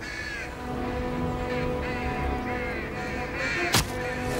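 Crows cawing repeatedly over a low, sustained musical drone that comes in about half a second in. A single sharp crack sounds near the end.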